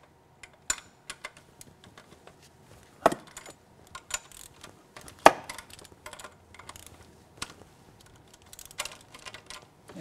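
Irregular metallic clicks and clinks of a ratchet and line-nut wrench working the fuel-injector hard-line nuts loose, with two sharper knocks about three and five seconds in.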